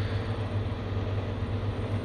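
A steady low mechanical hum with an even background hiss, with no distinct events.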